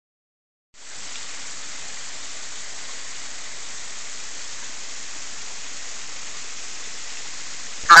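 Steady, even rush of water at a partly frozen wet-weather waterfall, starting under a second in.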